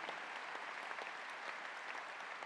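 Audience applauding: many hands clapping in a steady, even patter.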